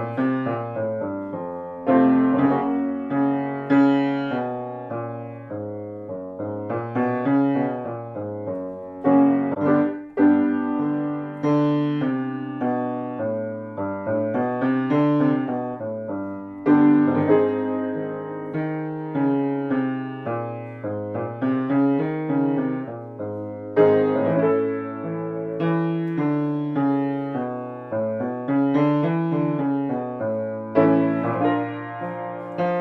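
Grand piano playing the accompaniment to a low-range vocal warm-up. It plays a short pattern of notes that steps up and back down, with a struck chord every couple of seconds, and the pattern repeats over and over.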